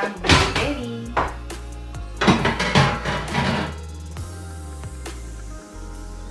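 Background music with a singing voice over a steady bass, the voice falling silent about four seconds in, with a few faint knocks near the end.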